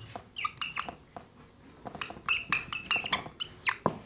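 Whiteboard marker squeaking and scratching across the board in a run of short, high strokes as words are written and then underlined.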